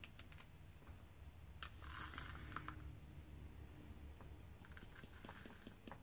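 Faint diamond-painting work: a drill pen tapping resin drills onto the canvas in small clicks. About a second and a half in comes a scratchy rustle lasting about a second. A low room hum sits underneath.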